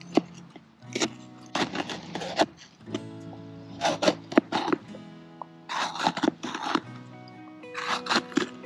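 Background music with sustained notes, over groups of sharp knife strokes cutting through bell pepper onto a plastic cutting board, in three bursts of rapid cuts.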